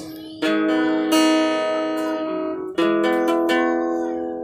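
Acoustic guitar strumming chords that ring on, with fresh strums about half a second in and again near three seconds.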